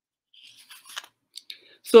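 A few faint, short snipping clicks and soft rustles over the first second and a half, then a man's voice starts speaking near the end.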